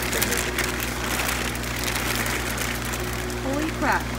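Thin plastic shipping bag crinkling and rustling as hands pull it open, over a steady low hum.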